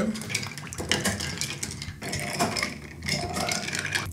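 A metal bar spoon stirring ice in tall glasses of cocktail, with a run of light clinks against ice and glass.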